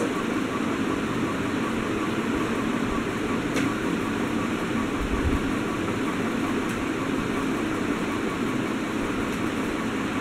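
Steady, even background noise at a constant level, with one faint click about three and a half seconds in.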